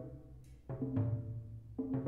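Multi-percussion drums of tom-toms, congas and bass drums with natural skin heads, struck with timpani-style mallets in short clusters of strokes. One cluster comes about two-thirds of a second in and another near the end, each leaving a low, ringing drum tone.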